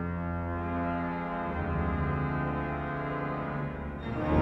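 Cavaillé-Coll pipe organ holding soft sustained chords over a low pedal tone, the harmony shifting about a second and a half in.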